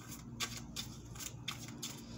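Tarot cards being shuffled and handled: faint, irregular soft clicks and brushing of card against card.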